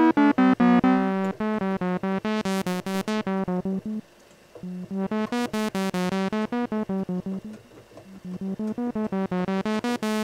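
Synthesizers.com transistor ladder filter on a sawtooth oscillator, set to its 12 dB-per-octave slope: a fast string of short buzzy notes, about six a second, whose tone opens bright and closes dark twice as the filter cutoff is swept, dipping almost to silence in between.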